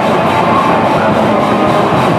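Hardcore band playing live: loud electric guitars and drums in a dense, continuous wall of sound.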